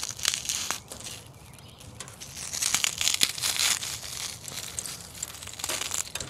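Brittle charcoal from a carbonized Swiss Cake Roll crumbling between fingertips: scattered small dry crackles and crunches, thickening into a denser crumbling about two seconds in.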